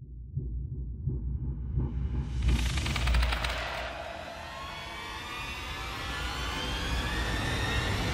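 Horror-style outro sound design: a deep rumble, joined about two seconds in by a hiss and a cluster of slowly rising tones that swell toward the end.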